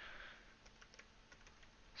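Faint computer keyboard keystrokes: a handful of separate key presses typing a number.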